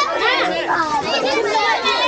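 Many children talking and calling out at once, a dense, lively chatter of overlapping high-pitched voices.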